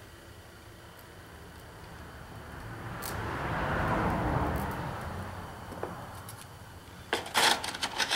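A low rushing sound that swells up, peaks about halfway through and fades away over some four seconds: a vehicle passing by. Near the end come light metallic clicks and rattles of thin steel oil-ring rails being handled.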